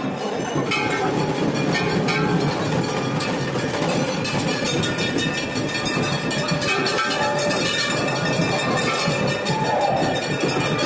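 Temple bells being rung over and over in quick succession, a continuous metallic clanging over the din of a dense crowd.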